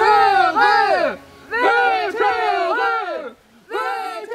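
Puppeteers' voices shouting the drawn-out call "Wötörööööö" twice, each call sliding down in pitch at its end.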